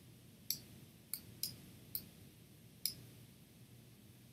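Computer mouse button clicking: five short, sharp clicks at uneven intervals.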